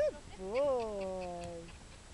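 A woman's drawn-out voice call to a trotting pony: a short rising call, then a longer one that rises and slowly falls away, the kind of stretched-out voice command used when leading a pony at the trot.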